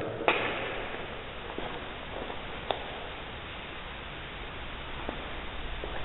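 Room tone of a large, empty brick hall: a steady hiss, with a short click just after the start and a fainter one near the middle.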